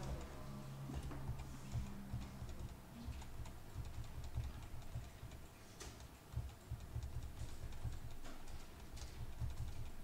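Faint, irregular keystrokes on a computer keyboard during code editing, over a low steady hum.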